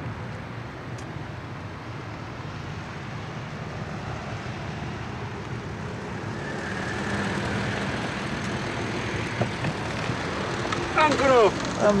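A black Audi A8 saloon driving slowly up over brick paving and pulling to a stop, over a steady outdoor hum; its sound swells through the middle, then eases. A voice starts near the end.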